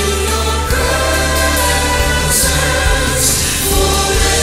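Communion worship song: voices singing together over steady instrumental accompaniment with a sustained bass.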